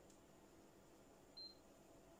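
Near silence: room tone with a faint steady hum, broken by one short high-pitched tone about one and a half seconds in.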